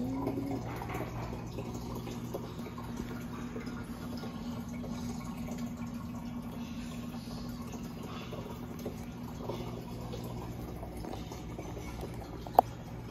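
Aquarium filter running: a steady trickle of water over a low hum.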